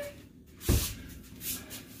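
Handling noise as a sword is shaken by its hilt: one dull knock with a short rush of hiss about two-thirds of a second in, then a fainter rustle.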